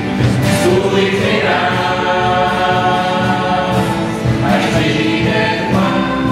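Mixed vocal group of men and women singing together in harmony, accompanied by acoustic guitar and double bass. The voices hold long chords that shift a few times.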